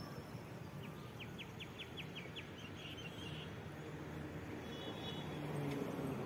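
Street traffic with motorcycle engines passing, a low steady rumble. About a second in, a bird chirps quickly about eight times.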